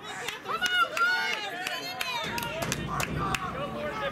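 Several voices shouting and calling at once, overlapping and not clearly made out, with a few sharp claps or knocks among them.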